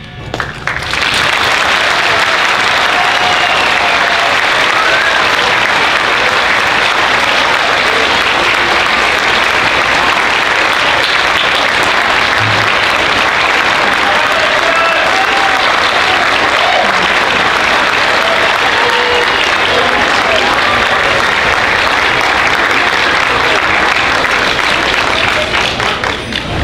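Audience applauding, swelling up within the first second and holding steady before tapering off near the end.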